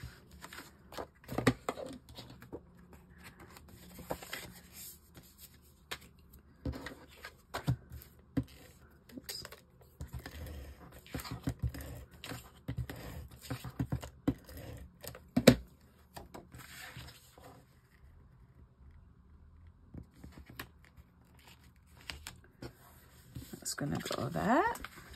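Card stock and paper being handled on a tabletop: scattered rustles, slides and light taps as panels are pressed onto card bases, with one sharp knock about two-thirds of the way through, the loudest sound.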